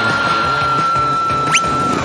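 A high-pitched cartoon voice holds one long, unwavering high note over background music. A quick rising whistle-like glide cuts in near the end.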